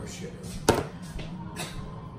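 A single sharp tap about a second in as a plastic spice shaker is handled on the kitchen counter, over a faint low steady hum.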